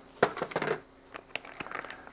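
Clear plastic bag of oxygen absorbers being cut open and handled: crinkling and rustling, with a sharp click about a quarter second in and quieter rustles after.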